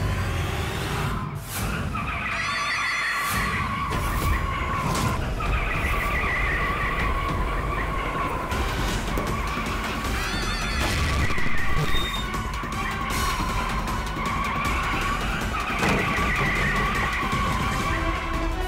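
A speeding motor scooter with long, wavering tyre-skid screeches, mixed with dramatic background music.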